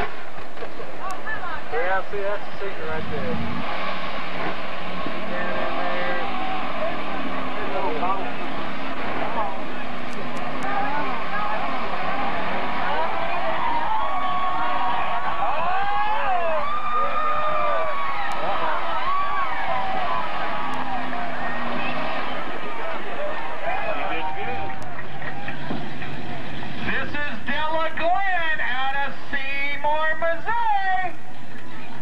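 Lifted mud trucks' engines running hard as they plough through a mud pit, mixed with a crowd's unintelligible shouting and talk; the voices stand out more clearly near the end.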